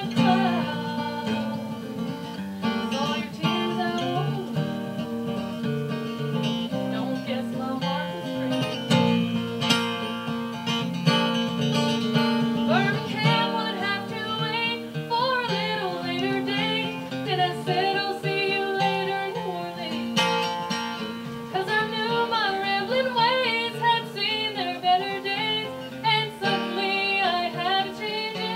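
A woman singing a folk song, accompanied by a strummed acoustic guitar.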